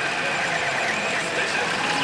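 Pachinko parlour din: a steady wash of ball clatter and electronic sound from the machines, with faint wavering jingle tones, as a Gundam Unicorn pachinko machine runs its jackpot fever mode.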